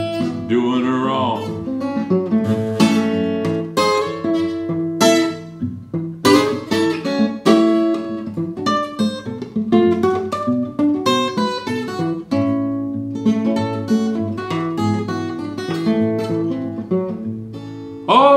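Steel-string acoustic guitar fingerpicked solo: an instrumental break of quick picked melody notes over lower bass notes.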